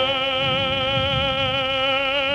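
Operatic tenor voice holding one long sung note with a wide vibrato over a soft piano accompaniment.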